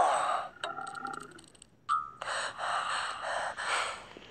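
Cartoon sound effects from a children's Bible story app as the animated Jesus is tapped and clutches his hungry stomach: a groan falling in pitch, then a few short tones and breathy gasping sounds.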